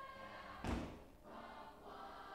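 Middle school choir singing, with one loud thump a little over half a second in.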